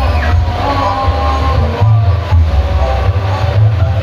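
Loud music with a heavy, pulsing bass and a sustained melody over it, played through a large truck-mounted parade sound system (sound horeg).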